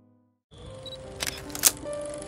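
The tail of a piano music bed fades out, then after a brief gap a title-card transition effect comes in: a hiss of static with a few sharp clicks, the loudest about a second and a half in, over the start of a new music bed with held tones.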